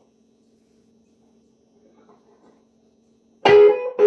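Schecter electric guitar through an amplifier: a steady low amp hum, then about three and a half seconds in the guitar comes in loud with a struck chord and blues notes, opening the tune.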